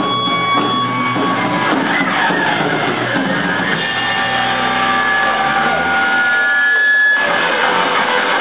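Live rock band playing, with electric guitars to the fore.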